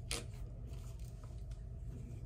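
Plastic over-ear headphones being handled and their headband adjusted to fit a large head: a sharp click just after the start, then a few faint ticks, over a low steady hum.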